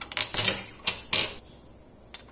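Kitchen utensils clinking against dishes: a quick cluster of sharp clinks, then two more, each with a brief ring.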